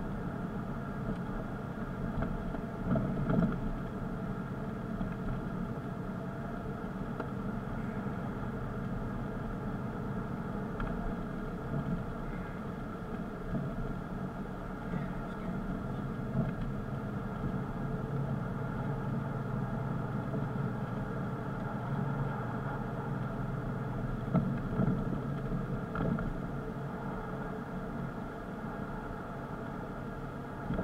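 Car engine humming steadily with tyre and road noise as the car drives along at an even speed.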